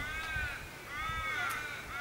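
A crow giving two drawn-out caws about a second apart, each rising and then falling in pitch.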